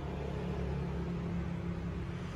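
A steady low hum with no change in level, between stretches of talk.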